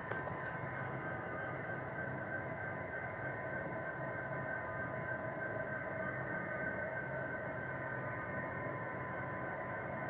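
Model diesel locomotive's sound system playing a steady engine drone with several high, held tones through a small speaker, with no rise or fall.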